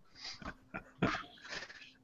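A man's soft, breathy laughter: several short, quiet chuckles.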